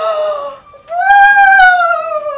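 A woman's drawn-out vocal exclamations of 'ohh', a short one followed after a brief pause by a longer one that is held for about a second and slowly falls in pitch.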